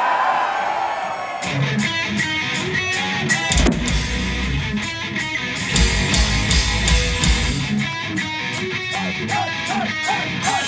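Live heavy metal band starting a song: distorted electric guitars come in about a second and a half in, with heavy bass notes joining a couple of seconds later.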